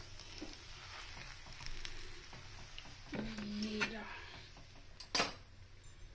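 Metal spatula working on a stovetop griddle as a cooked paratha is lifted off: faint scraping and handling, then one sharp clatter about five seconds in.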